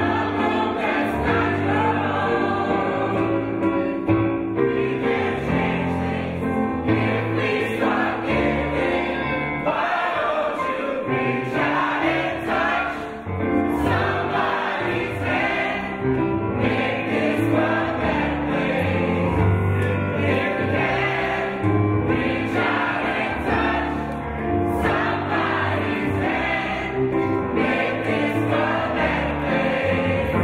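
A mixed group of men and women singing together as a choir, the singing carrying on without a break, with a short dip in loudness about halfway through.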